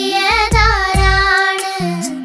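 Malayalam children's song: a singing voice holds one long note with vibrato over a bass-and-drum backing.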